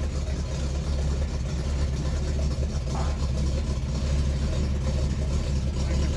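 Pontiac Firebird Trans Am engine idling with a steady low rumble as the car rolls slowly down a car-carrier ramp.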